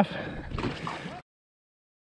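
Faint background noise with a brief, faint voice, which cuts off abruptly to dead silence just over a second in.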